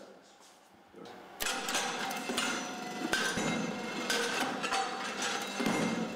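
Laboratory compaction machine ramming a soil-and-additive mix in a steel cylindrical mold: repeated knocks over a running mechanical noise, starting about a second and a half in.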